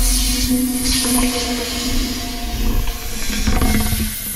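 A car's tyre rolling slowly over a wooden board, with a steady hiss and low running noise, under background music.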